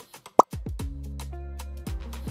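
A short, loud pop sound effect about half a second in, followed by background music with steady held notes.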